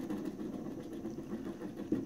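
A scratch-off game card being scratched with a small hard object instead of a coin: a steady, rapid rasp of repeated short strokes.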